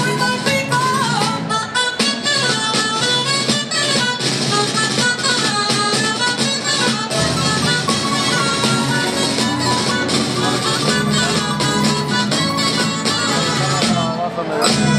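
Live folk group playing an instrumental jota passage: guitars and other plucked strings carry a melody over a quick, steady rhythm of sharp clicking percussion.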